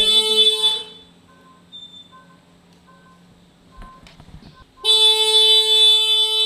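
A scooter's electric horn sounds on its own, a blast of about a second at the start and a longer one from about five seconds in. Between them the turn-indicator beeper gives quick, quiet repeated beeps. Horn and indicator are going off by themselves, a sign of an electrical or switch fault.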